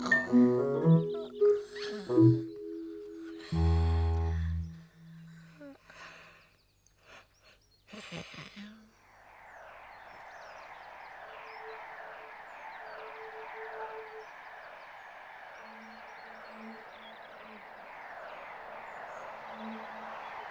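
A few seconds of playful pitched musical notes, with a deep low note about four seconds in and a short swoosh near eight seconds, then a steady, dense chorus of birdsong chirping for the rest.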